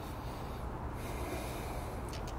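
A man breathing out audibly in a pause between words: a breathy hiss through the second half, over a steady low room hum.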